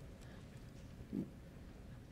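Quiet room tone, with one short, faint, low grunt-like sound from a person's voice about a second in.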